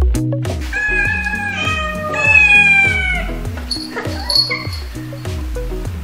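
A domestic cat meowing, about three drawn-out, slightly falling calls in the first half, over background music with a steady repeating beat.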